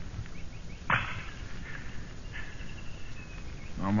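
A sharp knock from a radio-drama sound effect about a second in, followed later by a faint high ringing, over the hiss of an old broadcast recording.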